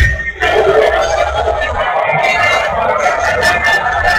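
Background music, with a brief dip in loudness just after the start before it carries on.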